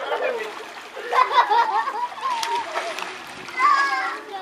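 Water splashing in a small swimming pool as children play in it, mixed with children's high-pitched voices and shouts that are loudest about a second in and again near the end.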